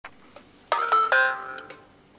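A smartphone plays a short electronic chime of three quick notes, each ringing on and the whole fading out within about a second. A light click comes just before it ends.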